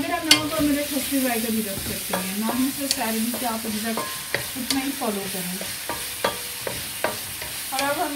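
A wooden spoon stirring chopped heart and kidney in an aluminium karahi, with irregular sharp knocks and scrapes against the pan, over the steady sizzle of frying in oil.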